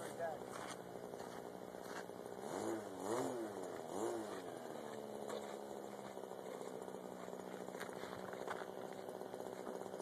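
A faint, steady low engine hum, with a distant voice talking briefly a few seconds in.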